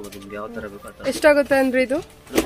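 Speech: a person's voice talking in drawn-out syllables, louder in the second half.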